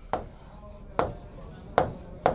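Marker pen tapping against a writing board as letters are written, three sharp taps a little under a second apart.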